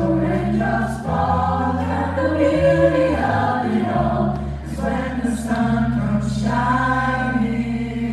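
Mixed choir singing held chords in close harmony over a steady low bass line, the chords shifting a few times.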